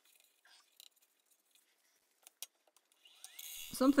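Near silence with a few faint, brief clicks, and a woman's voice beginning near the end.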